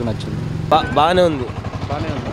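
Roadside traffic with a steady low engine hum from motor vehicles, under a man's speech.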